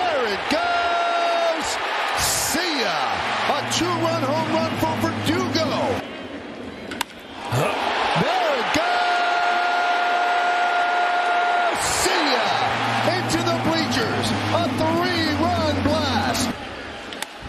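Ballpark crowd reacting to a home run: many overlapping shouting voices, a held steady tone twice, and a few sharp bangs.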